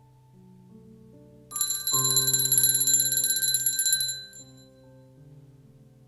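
A cluster of altar bells shaken rapidly for about two and a half seconds, starting about a second and a half in, rung at the consecration of the chalice. Soft keyboard chords are held underneath.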